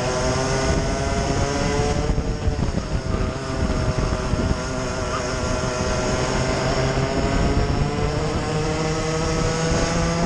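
Onboard sound of a racing kart engine at speed. Its pitch dips about two seconds in, then climbs steadily for several seconds as the kart accelerates down the straight, with wind rumbling on the microphone.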